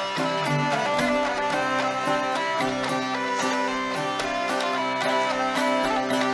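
Hurdy-gurdy playing a polska melody over its steady drone, accompanied by a plucked long-necked string instrument.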